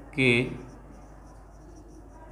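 A marker pen writing on a whiteboard: faint scratchy strokes as a word is written out, after one short spoken word near the start.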